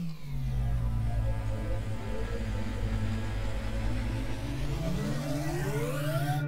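Cinematic sound-design sting for an animated title card: a deep rumbling drone whose pitch drops just after it starts and then sweeps steadily upward over the last couple of seconds, like a riser building into the reveal.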